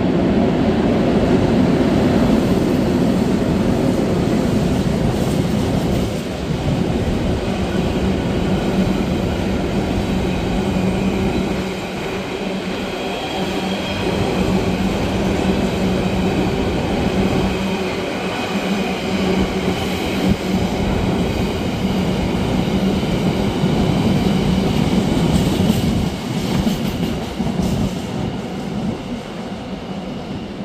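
Locomotive-hauled freight train of tank containers on flat wagons running past: a steady hum from the locomotive over the rumble of wheels on the rails. It grows fainter over the last few seconds as the end of the train moves away.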